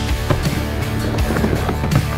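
Guitar-driven rock music, with a skateboard's wheels rolling across a concrete mini ramp underneath it; the rolling comes through most clearly near the end as the board nears.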